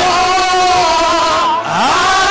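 Congregational worship singing: voices holding long, wavering notes, with a short upward slide near the end.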